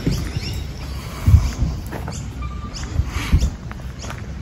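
Footsteps on gravel with handheld-camera bumps while walking; the heaviest bump comes about a second in and another near three seconds. Faint, short high bird chirps over the top.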